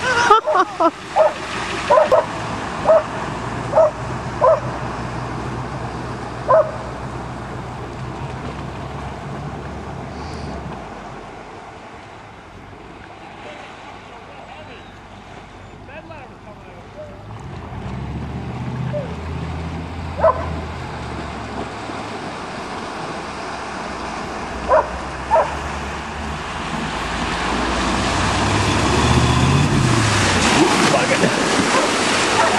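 A dog barking in short bursts: a run of barks in the first few seconds, then single barks later on. Under them a vehicle engine runs low and steady, fading away in the middle and growing louder again toward the end.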